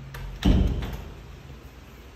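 An interior door being pulled shut: one heavy thud about half a second in, with a few light clicks of the latch and handle around it.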